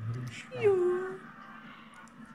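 A chihuahua gives one short whine that falls in pitch, about half a second in.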